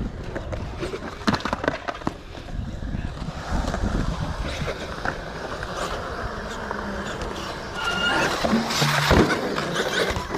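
Wheels rolling on skatepark concrete as a steady rough noise, with scattered knocks and a brief high tone about eight seconds in.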